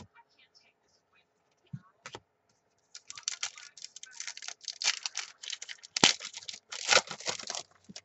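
Foil trading-card pack being torn open and crinkled by hand, starting about three seconds in, with a few light taps of cards on the table before it and two sharper snaps of the wrapper near the end.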